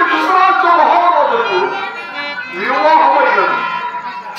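A man's voice singing long, drawn-out phrases in Telugu stage style, in two phrases with a short dip between them, with a harmonium accompanying.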